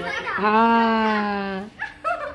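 Yellow Labrador giving one long, drawn-out whining howl that falls slightly in pitch and stops shortly before the end, while it tugs at a bag held in its mouth.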